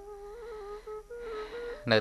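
Soft background music: a single sustained melody line, held notes shifting slightly in pitch a few times.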